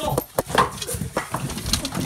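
Hurried knocks, bumps and scuffling of people scrambling out of a house through a door, with low, breathy voices.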